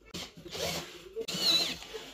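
Perforated metal speaker grille scraping and rubbing against the plastic cabinet as it is pressed into place by hand, in two short stretches, the second with a brief high squeak.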